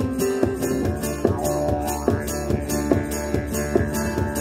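Live acoustic music: a steady didgeridoo drone played together with acoustic guitar notes, over a regular jingling percussive beat about three times a second.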